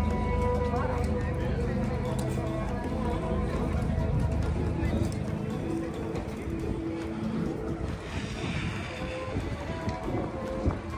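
Waterfront ambience: music and the voices of passers-by, over a low rumble that fades about halfway through.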